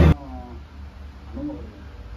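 A loud, low engine-like hum cuts off suddenly right at the start. After it comes a much quieter room with a few faint, short voice-like calls.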